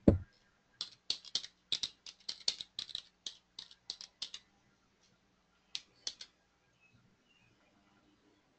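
A thump at the very start, then a run of quick, irregular computer-keyboard typing clicks for about four seconds, a pause, and a few more keystrokes about six seconds in.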